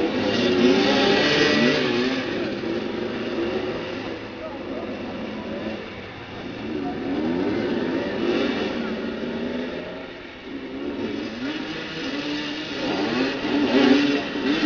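Several motoball motorcycles' engines revving together, their pitches rising and falling and overlapping, with a couple of brief lulls.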